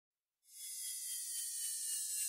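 Silence, then about half a second in a faint, high, shimmering hiss with a few steady high tones fades in and builds slowly: an edited-in intro riser sound effect.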